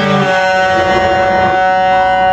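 Guitar holding a sustained chord; the low notes drop out shortly after the start, leaving two high notes ringing steadily.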